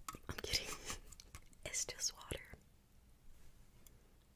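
Close-miked ASMR whispering with sharp mouth clicks, stopping about two and a half seconds in.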